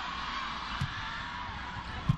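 Steady arena crowd noise, with a single sharp smack a little under a second in: a volleyball being struck on the serve.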